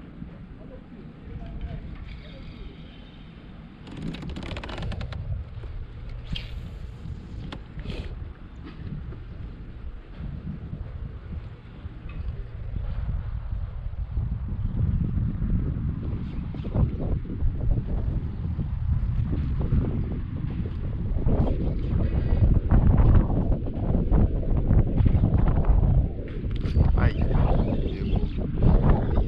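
Wind buffeting the microphone, a gusty low rumble that grows stronger through the second half, with a few light clicks and knocks early on from handling the rod and kayak.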